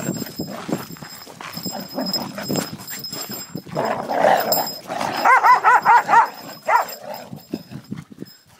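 Dogs jostling, with a rough noisy outburst about four seconds in, then a dog giving a quick string of short, high-pitched yips, about eight in a second, and one more shortly after.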